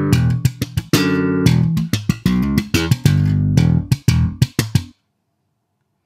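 Slap bass line on a 1966 Fender Jazz Bass, recorded direct: ringing popped double stops on the D and G strings, then slapped thumb notes, pops and muted ghost notes in a funk groove. The playing stops sharply about five seconds in.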